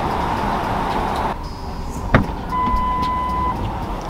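Inside a car: a steady hum, a single sharp click about two seconds in, then one steady electronic beep lasting about a second.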